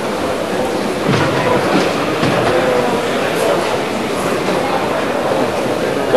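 Steady murmur of a large crowd in an arena hall, with faint distant voices in it.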